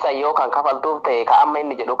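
Speech only: a man talking without pause.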